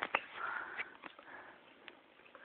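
A faint sniff with a few small clicks, fading to near silence after about a second and a half.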